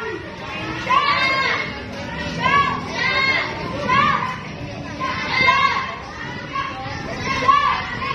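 Children's voices shouting and chattering, with repeated high-pitched calls coming roughly once a second.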